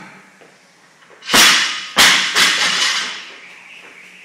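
A 205-lb barbell loaded with bumper plates dropped from the shoulders onto the gym floor. There is a heavy thud about a second in, a second bounce half a second later and a smaller third, with rattling that dies away.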